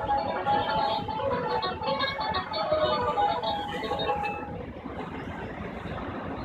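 Twangy banjo music played by an animated Halloween decoration of two banjo-playing skeletons: a quick plucked-string tune that stops about four and a half seconds in, leaving a low traffic hum.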